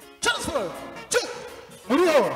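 A man's three short shouted calls into a microphone, each sliding down in pitch, over faint music.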